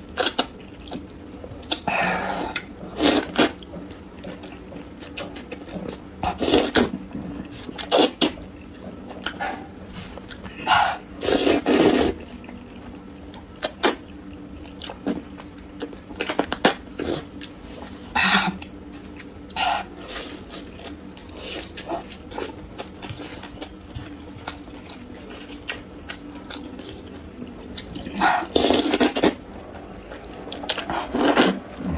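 Thick noodles in spicy sauce being slurped up from chopsticks: a series of loud wet slurps at irregular intervals a few seconds apart, the longest near the end.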